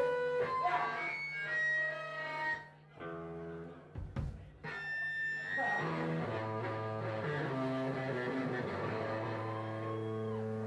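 Electric guitar, bass and drums playing live rock music. The music drops back briefly about three seconds in, then the guitar returns with sustained, ringing notes.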